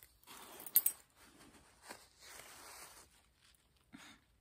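Rustling and scraping of a paper tissue and clothing being handled by a chimpanzee, in two noisy stretches, with a sharp click near the end of the first second.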